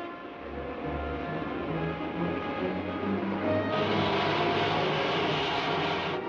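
Dramatic background score, its low line stepping from note to note under held tones. About two-thirds of the way through, a loud steady hiss comes in sharply and cuts off about two seconds later.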